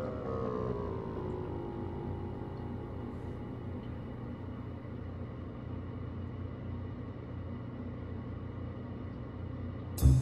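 Quiet background music: a low, steady drone with faint held notes, after a louder note fades out in the first second.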